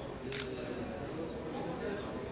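A man's voice speaking softly and haltingly over a steady low room noise, with a short sharp click or hiss about a third of a second in.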